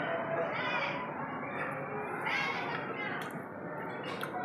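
A cat meowing twice, two drawn-out calls that rise and fall in pitch, about half a second in and again about two seconds in, over a steady background din.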